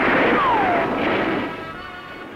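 Battle sound effects: a dense noisy rush of gunfire and artillery that fades over about two seconds, with a short falling whistle about half a second in, over background music.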